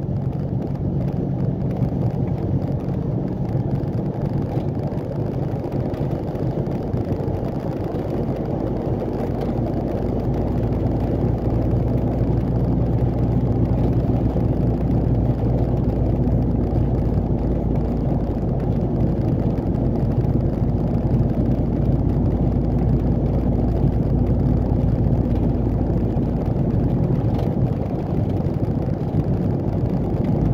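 Truck's diesel engine running steadily with road noise, heard from inside the cab while driving. The low hum grows a little louder about ten seconds in.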